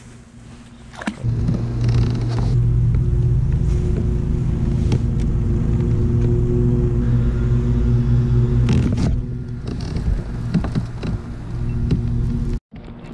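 A motor running with a steady low hum, starting about a second in and easing off near the end, with a few light clicks over it.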